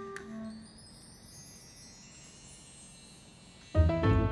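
Background score: a few soft held notes, then a shimmer of high chime-like tones climbing steadily in pitch, ending near the end in a sudden loud low hit with a sustained chord.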